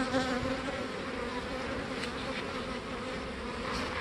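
Honeybees buzzing in flight around an open comb frame: a steady drone, with one bee's pitched hum louder for about the first half second.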